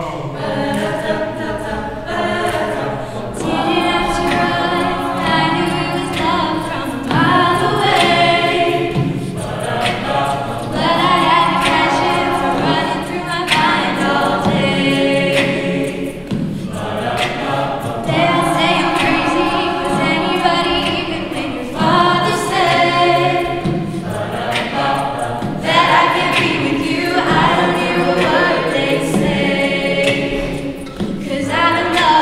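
A mixed-voice a cappella group singing live into handheld microphones, with no instruments: a female lead voice over sung backing harmonies from the rest of the group.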